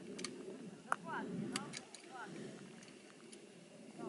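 Faint, indistinct voices of people talking some way off, with a few short chirps falling in pitch and several sharp clicks, the loudest about a second in.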